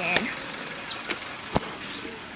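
Insects chirping in a high, pulsing trill that repeats in short bursts, with one sharp click about one and a half seconds in.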